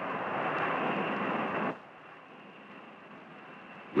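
Steady rushing noise of the Convair B-58 Hustler's four J79 turbojets in flight. It drops sharply to a lower level a little under two seconds in.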